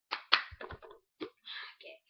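A quick, uneven run of about five or six sharp slaps and taps from hands and a plastic cup being handled, the second one the loudest.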